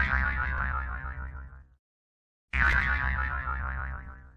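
A short sound-effect sting played twice, each starting suddenly and fading out over about a second and a half, the second coming just under three seconds after the first.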